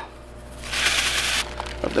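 Seasoning going into a plastic zip-top bag: a dry hiss of pouring granules and bag rustle lasting under a second, about halfway through.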